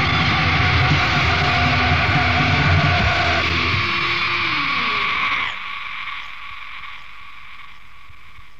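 Melodic doom/death metal band at the end of a song on a 1993 demo recording. The heavy full-band sound cuts off about three and a half seconds in, leaving a chord ringing out with low notes sliding down. About five and a half seconds in it drops to a faint lingering ring.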